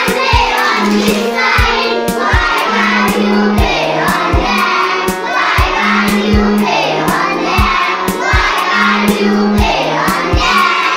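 A class of young schoolchildren singing an English action rhyme together, over an accompaniment with a steady beat of about two and a half thumps a second and long held low notes.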